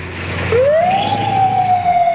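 Ambulance siren starting up about half a second in, its pitch rising quickly and then holding in a long wail that sags slightly.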